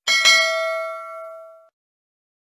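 Notification-bell sound effect of a subscribe animation: a bright chime struck twice in quick succession, ringing with several tones and fading out within about a second and a half.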